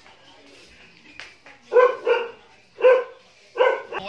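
A dog barking: four short barks in about two seconds, starting a little under two seconds in.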